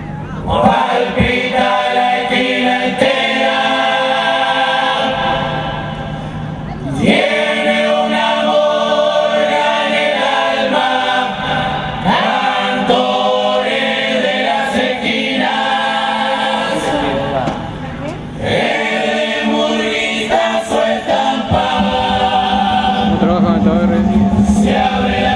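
Murga chorus singing together in long phrases, with brief breaks between phrases about 7 and 18 seconds in.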